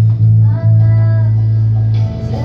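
Electric bass guitar played through an amplifier, sounding a low note that is re-plucked a few times, under a pop backing track with a female voice singing a sustained line.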